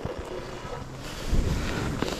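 Skis sliding and hissing over snow, with wind buffeting the microphone; the rush gets louder about halfway through.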